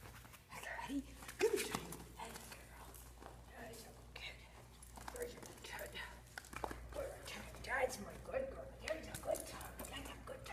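A dog playing tug on a toy, giving short vocal sounds and panting amid scuffling clicks, loudest about one and a half seconds in and again near eight seconds.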